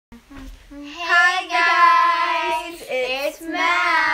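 Young girls singing together in long, drawn-out notes, starting about a second in, with a short break near three seconds.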